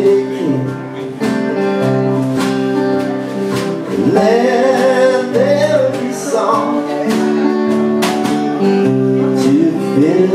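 Live band playing: electric and acoustic guitars over a drum kit, with steady drum hits.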